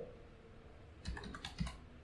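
Faint computer keyboard typing: a short run of four or five quick keystrokes about a second in, typing a single word.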